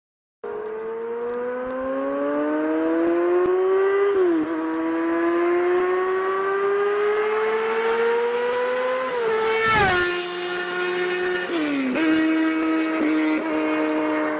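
Recorded motorcycle engine sound effect, as played by a toy bicycle engine sound unit. It starts abruptly and the engine pitch climbs steadily as the bike accelerates, dropping at gear changes about four seconds in and again near ten seconds (with a short burst of noise), then once more near the end.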